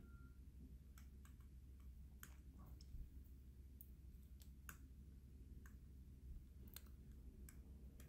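Faint, irregular clicks of a stylus tapping and dragging on a tablet screen during handwriting, about a dozen in all, over a low steady background hum.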